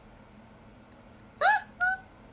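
A young woman's high-pitched laughter: two short, squeaky bursts of voice near the end.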